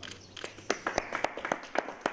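A small group of people clapping by hand: separate, irregular sharp claps that start all at once and keep going.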